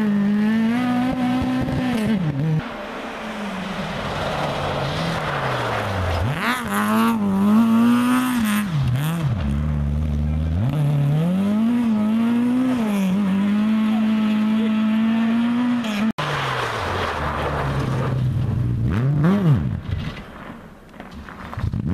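Rally car engines revving hard as the cars slide one after another through a snowy junction, the engine note climbing and dropping again and again with throttle and gear changes.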